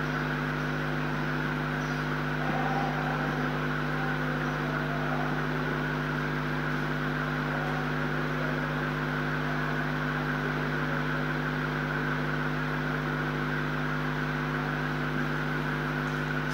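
A steady machine-like hum: a low drone made of several steady tones over an even hiss, unchanging all through.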